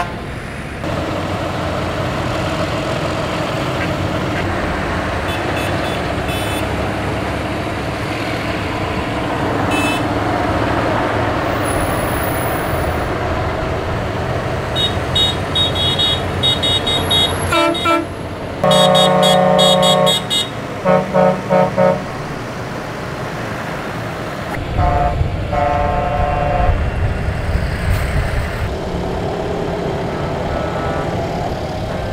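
A slow convoy of farm tractors and lorries with engines running, horns honking in protest. Scattered short toots begin a little before the middle, then comes one long loud blast followed by several short ones, and more toots follow later.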